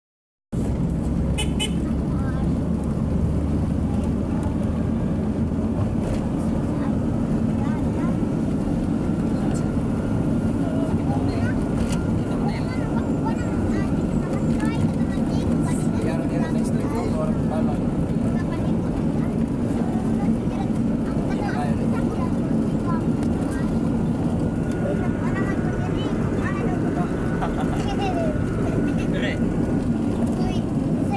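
Steady engine, road and wind noise heard from inside a moving vehicle.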